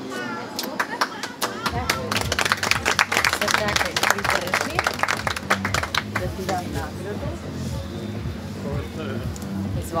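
A small crowd clapping for about five seconds, starting about a second and a half in and dying away, with music playing underneath from about two seconds on.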